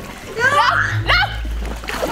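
Pool water splashing against an inflatable float as swimmers splash at it, with a woman shouting "No, no!"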